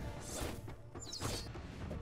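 Faint background music with a few soft hits and a whoosh, the score and fight sound effects of an animated episode.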